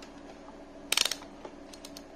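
Rotary selector dial of a handheld digital multimeter being turned: a quick run of ratchety detent clicks about a second in, then a few lighter single clicks near the end.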